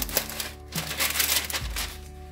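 Parchment paper crackling and rustling in irregular bursts as hands press and smooth pre-cut sheets flat on a metal sheet pan, over steady background music.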